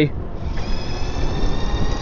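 CYC X1 Stealth 72-volt mid-drive ebike motor running under power, giving a steady high-pitched whine of several tones that starts about half a second in. The whine is not bad at all, over low wind rumble on the microphone.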